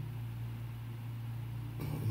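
A steady low hum with faint hiss underneath, unchanging throughout.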